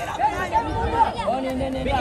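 Several people's voices shouting and chattering over one another, with loud raised calls near the end.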